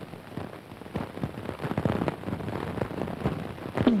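Dense crackle and hiss of a worn old film soundtrack.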